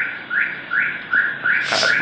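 A small animal's call: short, rising chirps repeated evenly at about three a second. A brief hiss comes near the end.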